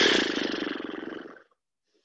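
A person's loud, rough breath out with some voice in it, like a groaning sigh. It starts suddenly and fades away after about a second and a half.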